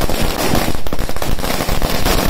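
A string of firecrackers going off: a rapid, continuous run of loud cracks.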